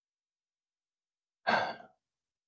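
Near silence, then one short breathy sigh from a man about one and a half seconds in.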